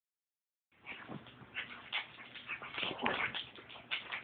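A small dog making short, irregular noises, with rustling, as it pushes and rubs its head against a bare foot, starting under a second in.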